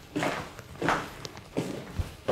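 Footsteps of people walking at an unhurried pace, three even steps about two-thirds of a second apart.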